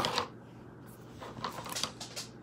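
Handling noise: a sharp knock right at the start, then a few light clicks and rustles.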